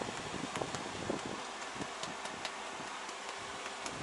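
Soft rustling and scattered small clicks of handling as a hand moves over a cat and the camera is jostled, over a steady background hiss.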